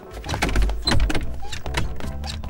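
Cartoon sound effects of a character dashing off through a pair of swinging double doors: a low rushing sound, strongest around a second in, with door sounds and clicks, over light background music.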